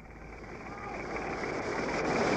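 Surf and wind noise on an old home-movie soundtrack, starting quiet and rising steadily in level, with faint voices in the background.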